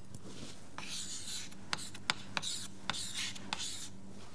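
Handwriting: a run of short scratching strokes with sharp little taps between them, as letters are written out by hand.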